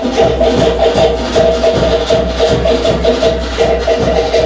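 Live Cook Islands drum music for the dancers: fast, evenly spaced percussion strikes over a steady held tone.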